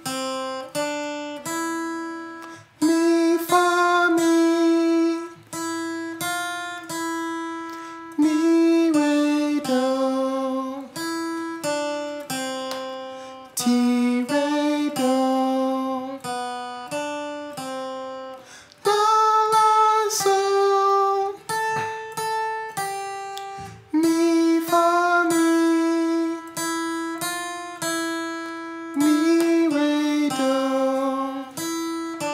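A man singing short solfège warm-up phrases to a strummed Yamaha acoustic guitar, with a new strummed phrase starting about every five seconds.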